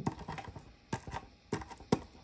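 A small hard object tapping and pressing on a paper-covered tabletop, crushing vitamin pills into powder: a few sharp, irregularly spaced taps.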